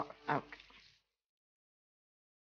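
A woman's speech trailing off in the first half second, then dead silence.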